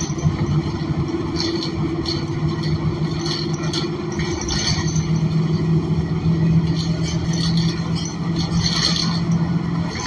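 Cummins Westport ISL G natural-gas engine of a New Flyer XN40 city bus running at a steady drone while the bus is under way, heard from inside the rear of the cabin. Brief rattles and clatters from the bus interior come and go over it.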